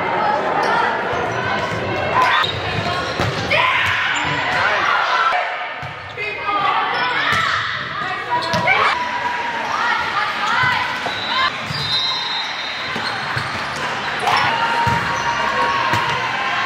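Indoor volleyball play: the ball being struck and bouncing on the court, with several sharp hits among players and spectators shouting and talking, echoing in a large gym.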